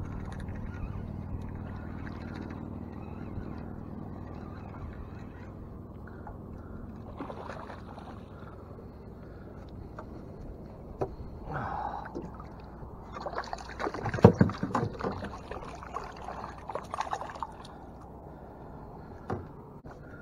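Water splashing and sloshing against a small boat as a small spotted seatrout is reeled in on a fishing line, with the loudest splashes about fourteen to seventeen seconds in, over a steady low hum.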